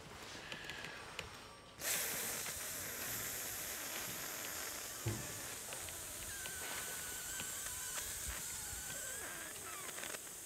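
A long, steady breath blown into a handheld breathalyser, starting suddenly about two seconds in and held without a break. In the second half a faint steady high tone joins it, and there is one soft knock around the middle.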